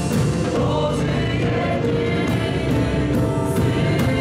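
Live church worship band, with keyboard and drum kit, accompanying a group singing a Polish worship song. Cymbal crashes come about a second in and again after about three seconds.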